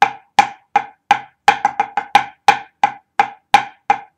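Drumsticks striking a practice pad in slow, even, dry strokes, about three a second, with a quicker cluster of strokes about one and a half seconds in. It is a right-hand paradiddle worked slowly into a 9/8 rhythm, the groundwork for the pipe band Swiss ruff.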